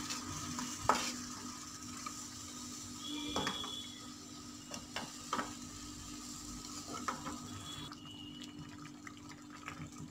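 Masala paste sizzling in a kadai while a wooden spatula stirs it, with a few separate knocks against the pan. Water goes into the pan towards the end and the sizzle dies down, which is the start of the egg masala gravy.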